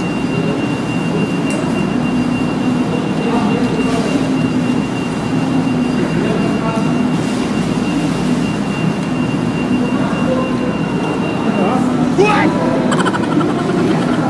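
Steady restaurant room noise: a continuous low hum with indistinct voices, and a faint high whine that stops near the end.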